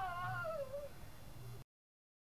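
The tail of a person's terrified scream, falling in pitch and dying away into a whimper within the first second, over a low hum. The sound cuts off suddenly about a second and a half in.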